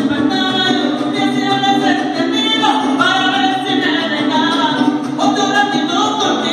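A huapango played live on violin and a small strummed guitar, the violin carrying the melody with sliding high notes over steady strumming. A voice singing also comes through.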